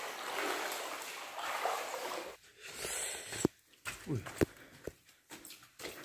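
Footsteps splashing and sloshing through shallow water on a cave floor for about two seconds, then quieter, with scattered short knocks and a few brief voice-like sounds.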